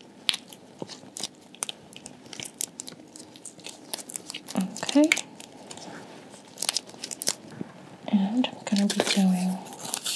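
Close-miked rustling, crinkling and clicking from a speculum and exam drape being handled, with a brief murmured voice about five seconds in and again near the end.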